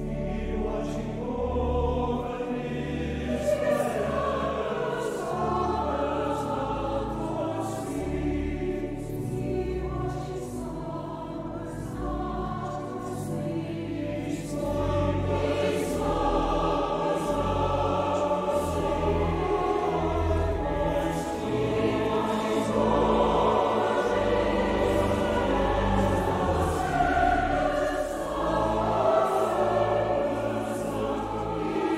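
Large mixed choir of women and men singing a choral piece in sustained, legato lines, growing louder about halfway through.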